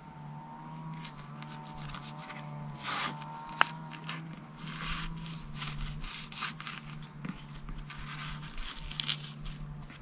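Knife filleting a small redfin perch on a plastic cutting board: irregular scraping and tearing strokes as the blade works along the bones and through the tough skin. A steady low hum runs underneath, and there is one sharp click about three and a half seconds in.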